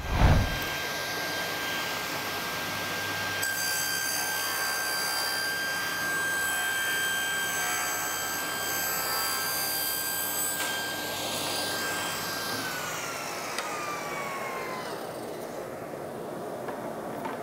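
Table saw running with a steady whine and cutting through an MDF board from a few seconds in until past the middle. Near the end the saw is switched off, and the whine falls in pitch as the blade spins down.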